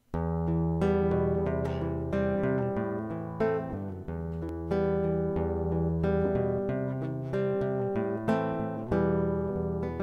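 Instrumental song intro: acoustic guitar playing plucked notes over a held bass line, starting suddenly.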